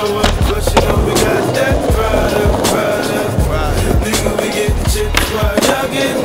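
Skateboard on concrete: wheels rolling, then sharp clacks as the board pops up onto a concrete ledge and rides along it. Hip-hop music plays throughout.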